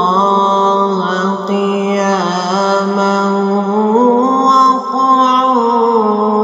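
A man's solo voice in melodic Quran recitation in maqam Bayati, holding a long drawn-out melismatic phrase with small wavering ornaments. The pitch steps up about four seconds in.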